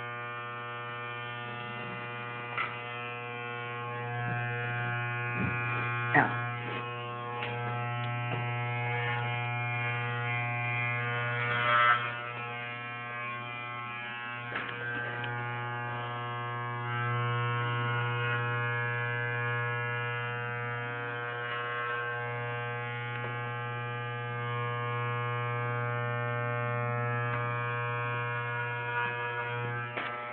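Electric hair clippers running with a steady low buzz while cutting hair, the level swelling and dipping as they work, with a few short knocks along the way.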